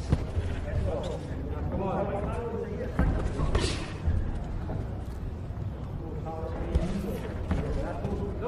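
Boxing gloves thudding as punches land, with three or so sharp impacts standing out, one just after the start, one about three seconds in and one near the end, over indistinct voices calling out around the ring.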